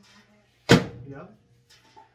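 A countertop microwave's door shut with one sharp slam a little under a second in.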